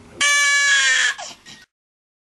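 A baby crying: one loud wail lasting about a second and falling slightly in pitch, then cut off suddenly.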